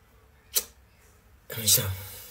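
Mostly quiet, with one sharp click about half a second in and a brief vocal sound near the end.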